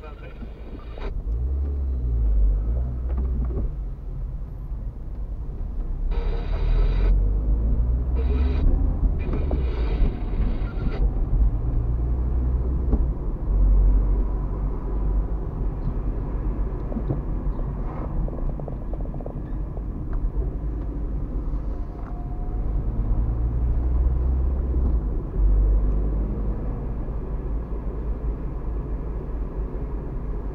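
Car driving through town heard from inside the cabin: a low engine and road rumble that builds as the car pulls away about a second in and stays heavy as it drives on. A few brief higher sounds come between about six and eleven seconds in.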